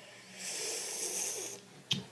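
A person's breath, a hissy rush lasting about a second, followed near the end by a short, sharp click.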